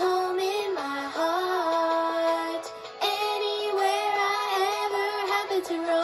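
Children's cartoon song played through laptop speakers: a high voice sings long held notes over music, with a short break a little before three seconds in.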